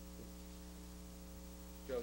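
Steady electrical mains hum in the recording's sound system: a low, even buzz made of several fixed tones. A man's voice starts right at the end.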